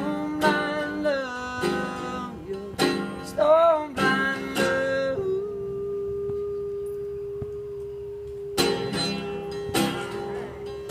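Live solo guitar music in a passage without words. Chords are struck sharply and a wavering melody line bends in pitch over them. About halfway through, a single long note is held for roughly three seconds, and then the struck chords come back near the end.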